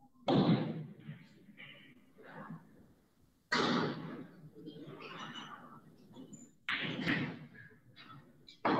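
Pool balls knocking and thudding on the table during a shot, three sudden loud knocks spaced about three seconds apart.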